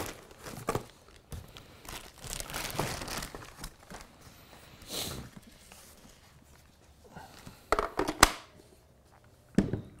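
Cardboard box and clear plastic packaging rustling and crinkling as a compact radio is unpacked, with a few sharp clicks and knocks about eight seconds in.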